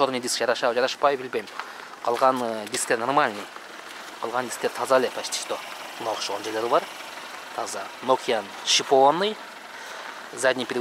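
A man talking in short phrases with brief pauses between them.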